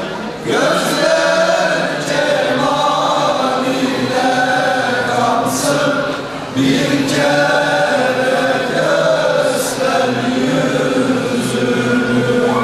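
Male choir singing an ilahi, a Turkish Islamic hymn, in sustained phrases, with two short breaks between phrases: near the start and about halfway through.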